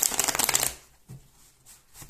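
Riffle shuffle of a tarot deck: a fast run of card edges flicking together that stops less than a second in, followed by a few faint taps as the halves are handled and pushed back together.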